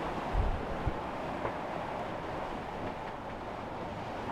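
Steady rush of wind and breaking seas aboard a sailing catamaran pushing upwind through rough water, with a couple of low thumps in the first second.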